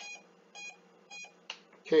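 Three short electronic beeps, evenly spaced about half a second apart, then a single sharp click.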